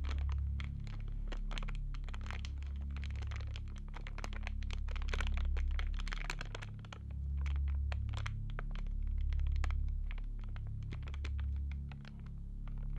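Background music under the title cards: a low, droning bass that moves to a new note every second or two, with scattered crackling clicks over it.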